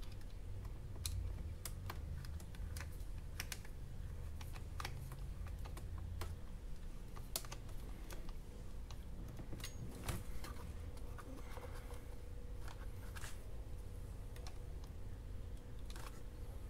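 Irregular light clicks and taps of hands working a metal hose clamp and rubber intake boot down onto a scooter's throttle body.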